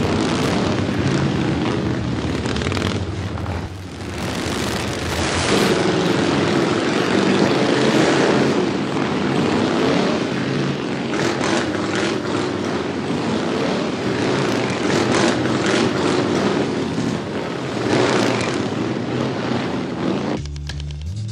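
A pack of chopper motorcycles riding by, their engines running loud and continuous. The sound dips briefly about four seconds in and is loudest from about six to nine seconds in.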